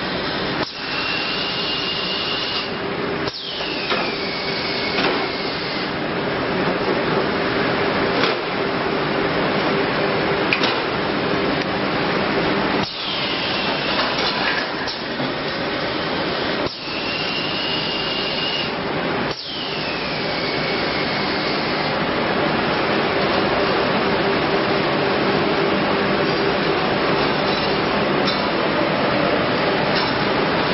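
Web sealer and heat-shrink wrapping machine running, with a continuous blowing hiss over a steady hum. Twice, a high tone holds for a moment and then glides down in pitch.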